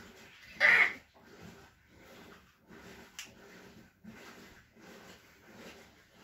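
Faint rhythmic panting, about two breaths a second, after a short loud exclamation near the start; a single sharp click about three seconds in.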